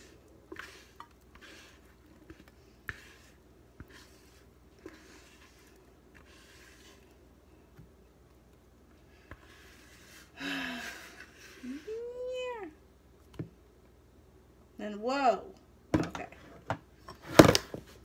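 A spatula scraping thick chocolate batter out of a plastic mixing bowl into a glass baking dish, with soft, scattered scrapes for the first ten seconds. A cat meows once about twelve seconds in, and there is one loud knock near the end as the bowl is set down on the counter.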